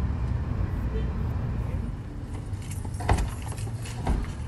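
A car's engine running as it comes up in an open lot, with a sharp knock about three seconds in as its doors are flung open.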